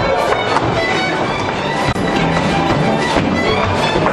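Live Transylvanian Hungarian folk dance music from a string band with double bass, playing a steady, driving dance rhythm.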